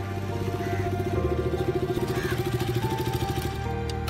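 Motorcycle engine running with a rapid, even pulsing beat as the bike pulls up and stops, over soft background music with held notes.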